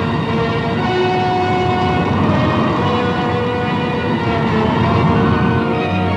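Orchestral film music: several held chord notes sustained over a thick, rumbling low texture.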